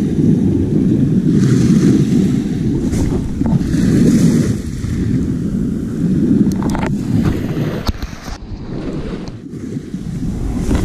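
Small waves washing up on a beach, a wash swelling and fading every two seconds or so, over a steady low rumble of wind on the microphone.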